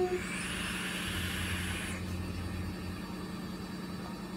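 A long draw on an e-cigarette: air hissing through the atomizer for about two seconds. Under it, the steady low hum of a washing machine running.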